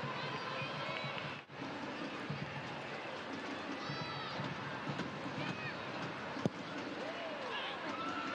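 Stadium crowd ambience: a steady hubbub from the stands with a few faint scattered shouts, briefly dipping about a second and a half in.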